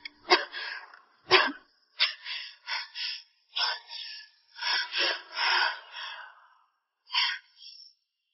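A woman's breathy, wordless vocal sounds: a string of short gasps and exhalations, with a sharper burst about a second in, fading out near the end.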